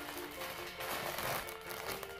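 Clear plastic zip bag holding a basketball jersey crinkling as it is handled, over background music with steady held tones.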